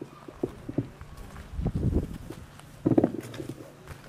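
Footsteps and shuffling on wooden deck boards, with a few light knocks, and a brief voice sound about three seconds in.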